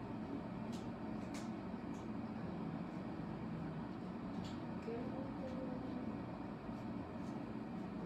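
Steady low room hum, with a few faint short clicks as a foam craft crown is handled and pressed onto the head.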